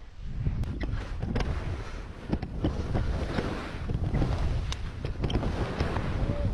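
Wind buffeting the camera's microphone: a loud, steady rushing rumble with scattered knocks and clicks.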